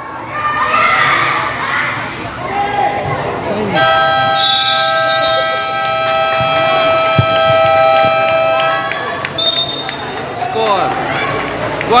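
A long steady electronic buzzer from the scoreboard clock, starting about four seconds in and holding for about five seconds before cutting off, over crowd voices from the stands; it marks the end of a period in a basketball game.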